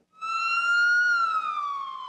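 Emergency vehicle siren wailing: one slow wail that rises slightly, peaks about halfway through, then falls.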